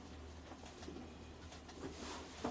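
Quiet room tone with a steady low hum, and faint rustling of cotton-gloved hands turning a camera lens.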